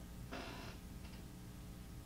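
Quiet steady room hum, with a short soft rustle-like noise about a third of a second in and a fainter one about a second in.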